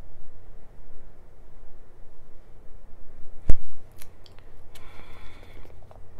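A cream container being opened and handled: one sharp click about three and a half seconds in, then a few lighter clicks, over a low steady hum.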